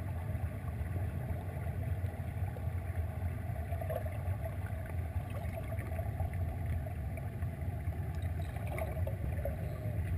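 Muffled underwater sound of a swimming pool picked up by a submerged camera: a steady low drone with no distinct events.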